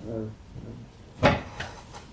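A single short, sharp knock about a second in, louder than the voices around it, between a few brief spoken words.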